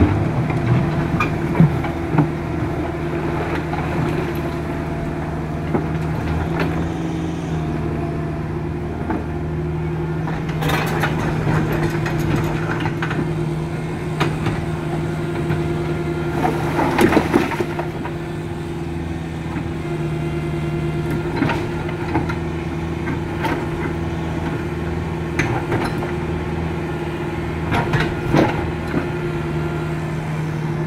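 Caterpillar mini excavator's diesel engine running steadily, with knocks and grinding clatter of river stones being dug and moved by the bucket several times, the loudest about halfway through.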